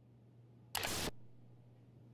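A single short burst of noise, about a third of a second long, near the middle, over a faint low steady hum.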